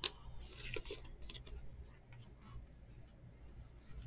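Faint rustling, scraping and light clicks of trading cards being handled and slid into a clear plastic sleeve. Busiest in the first second and a half, then quieter.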